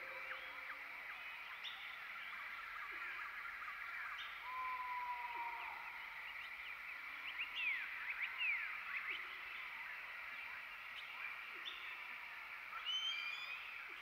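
Faint outdoor nature ambience: many short chirps and gliding animal calls over a steady high hum, with one held call about four and a half seconds in and a cluster of calls near the end.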